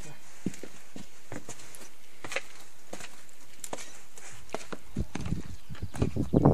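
Footsteps and handling of a hand-held camera: scattered light knocks and rustles, a few a second. From about four and a half seconds in, a low rumble builds on the microphone.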